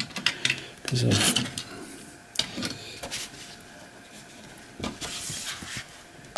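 Handling noise from small die-cast toy trucks being moved and a black sheet being pulled off the tabletop: scattered light knocks and clicks, with a rubbing rustle about five seconds in. A brief murmur from a voice about a second in.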